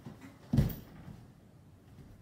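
A single dull thud about half a second in, as a strike lands on a heavy canvas punching bag.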